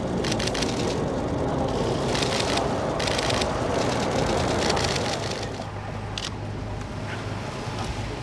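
A Nissan minivan's engine running outdoors, with several short bursts of rapid clicking in the first five seconds; the overall sound drops a little after about five seconds.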